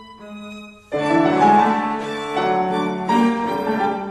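Piano trio of violin, cello and piano playing classical chamber music. A soft held low string note gives way about a second in to a sudden loud entry of all three instruments together.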